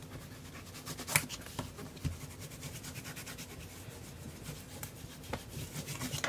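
Bone folder rubbed back and forth over patterned paper, burnishing it down onto glued cardstock so it adheres. It makes a run of quick scratchy strokes, with a couple of sharper scrapes about one and two seconds in.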